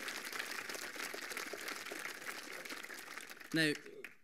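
Conference hall audience applauding, with some laughter, in response to a speaker's joke; the clapping eases slightly before a man starts speaking again near the end.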